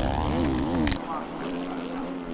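Motocross bike engine heard close from an onboard camera, its pitch rising and falling as the rider works the throttle and gears. About a second in it cuts to a quieter, steadier engine drone from bikes further away.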